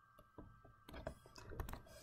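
Faint, scattered taps and clicks of a stylus on a tablet screen as a letter is handwritten.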